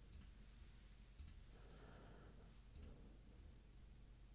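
Near silence broken by three faint, short computer clicks: one at the start, one just over a second in, and one near three seconds. These are the clicks of the pointer on the dialog.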